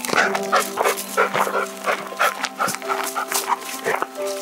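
German shepherd barking in a quick run of short barks, about three a second, over background music with held notes.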